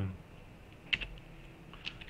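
A few keystrokes on a computer keyboard: two distinct clicks about a second apart, with fainter taps between.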